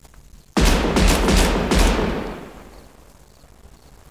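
A burst of gunfire sound effect: several shots in quick succession starting about half a second in, with a deep rumble that dies away over the next two seconds.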